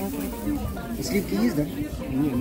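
Indistinct talking between people at a market stall, voices without clear words.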